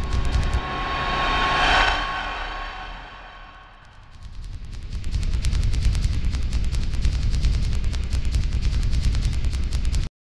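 Channel logo intro sting of electronic sound effects: a fast pulsing beat with heavy booming bass, a swelling whoosh that peaks about two seconds in and fades away, then the fast pulsing bass beat again, cutting off suddenly at the end.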